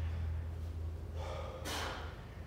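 A man's forceful breath of exertion, a short rushing huff about one and a half seconds in, as he pulls his legs up in a hanging leg raise. A low steady hum runs underneath.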